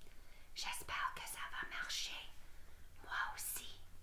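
A woman whispering a few soft, breathy words, in two short stretches: one starting about half a second in and another about three seconds in.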